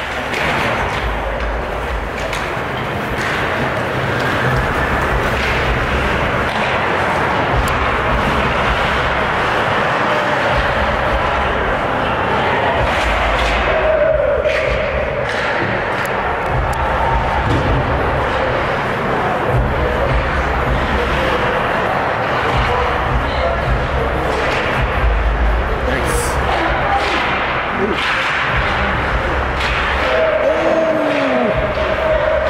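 Indoor ice hockey game: a steady murmur of spectators' voices, with scattered sharp clacks and thuds of sticks, puck and players hitting the boards.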